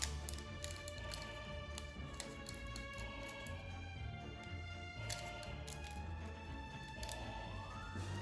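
Background music with a steady low beat and held tones, with a rising sweep near the end.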